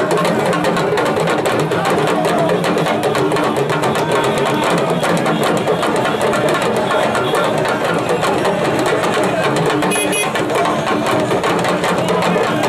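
Yoruba hourglass talking drums beaten with curved sticks in a fast, unbroken rhythm, with gliding drum pitches over dense rapid strokes. Crowd voices mix in.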